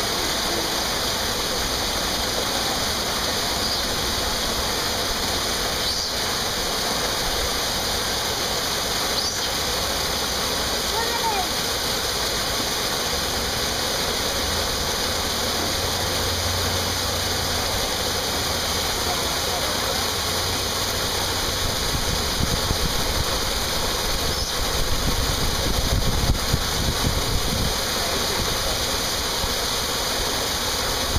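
Steady rushing hiss of water pouring into an enclosure pool. A low rumble comes in partway through and grows stronger near the end.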